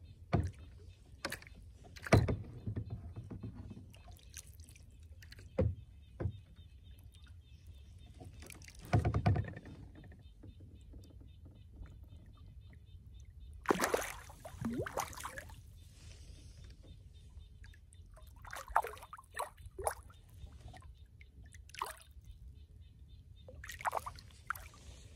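Hooked rainbow trout thrashing at the water's surface beside a kayak: irregular splashes, the loudest about 9 and 14 seconds in, among scattered small knocks and clicks.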